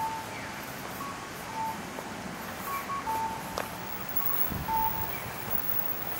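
Electronic two-note chime of a Japanese audible pedestrian crossing signal, a high note followed by a lower one, repeating about every second and a half over the hiss of city traffic. A sharp click comes a little past halfway, and a low rumble of wind on the microphone follows near the end.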